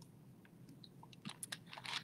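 Faint sounds of drinking from a thin plastic water bottle: a quiet first second, then a scatter of small clicks and crackles of the plastic and the mouth in the second half as the bottle comes away.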